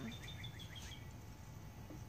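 Quiet outdoor background: a faint, rapid high chirping trill, about ten chirps a second, that fades out about a second in, over a steady low hum.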